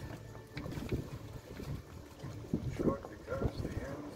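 Low rumble of wind and choppy harbour water, with indistinct voices talking briefly in the second half.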